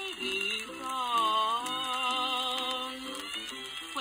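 1927 Victor Orthophonic 78 rpm record playing: a contralto with violin, guitar and piano accompaniment, with a long held note that wavers in vibrato through most of the stretch.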